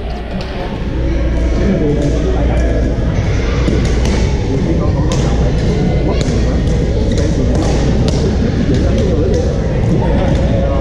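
Badminton being played in a large, busy sports hall: repeated sharp racket strikes on shuttlecocks, several a second, over the echoing chatter of many players.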